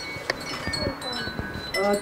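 Light, high-pitched tinkling and clinking of small hard objects, with a few soft knocks.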